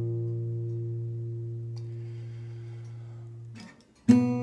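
A guitar chord ringing and slowly fading, then damped to silence just before the end.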